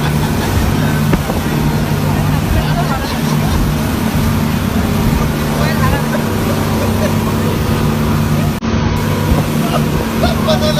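Speedboat engine running at speed with a steady drone, over the rush of wind and water, with passengers talking.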